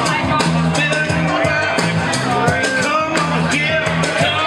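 Live band playing up-tempo rock-and-roll with a singer, a bass line and a steady drum beat.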